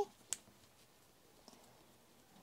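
A single sharp click about a third of a second in, then a faint tick about halfway through. It is the handling noise of fingers working a fabric ribbon through the metal eyelet of a small paper tag.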